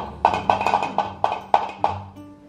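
An egg being tapped again and again against the rim of a bowl, about ten quick light knocks in two seconds. The shell is hard to crack and is not breaking yet.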